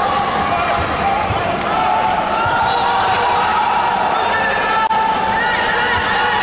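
Spectators and coaches shouting over one another in an indoor arena during a taekwondo bout. Some calls are drawn out for a second or more.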